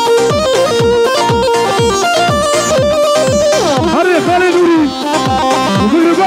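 Kurdish wedding dance music from a band: a fast, even drum beat of about four strokes a second under a melody line. A singer's voice with a wavering vibrato comes in about four seconds in.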